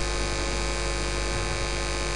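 Steady electrical mains hum and buzz with a hiss underneath, unchanging throughout.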